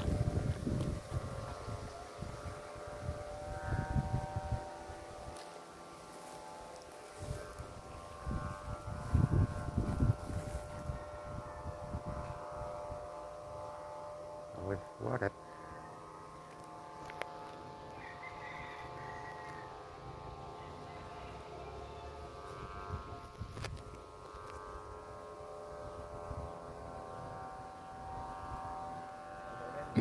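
Kite flutes humming in the wind: several steady tones held together as one unbroken chord. Gusts of wind buffet the microphone a few times in the first half.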